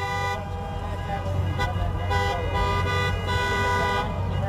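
Several car horns held down at once, sounding as overlapping steady tones, over a low rumble.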